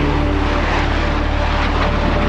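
Low-flying jet aircraft passing overhead: a loud, steady rush of engine noise with a heavy low rumble.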